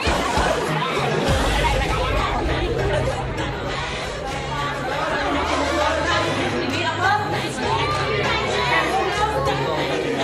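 Many children's voices chattering at once in a classroom, over background music with a steady bass line.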